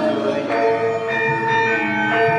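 Javanese gamelan playing, its struck bronze metallophones ringing in held, overlapping bell-like notes.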